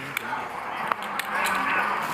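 Low background murmur of voices in a card room, swelling slightly after about a second, with a few light sharp clicks.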